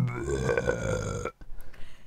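A single long burp lasting just over a second, then cutting off.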